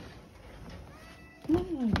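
Domestic cat meowing faintly about a second in, followed by a woman's voice speaking near the end.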